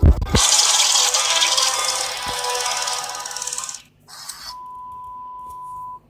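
Trailer sound effects played on a phone: a deep boom, then about three and a half seconds of loud rushing hiss that stops sharply, then a steady high beep tone held for the last second and a half before it cuts off.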